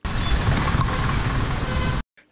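Coach bus engine running beside the road with passing traffic: a steady low rumble with no breaks.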